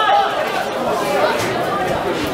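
Several voices of football spectators talking and calling out over one another, making a loud, steady chatter.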